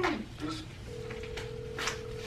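An outgoing phone call ringing on speakerphone: one steady ringback tone starts about a second in and holds, after a short falling vocal sound at the very start.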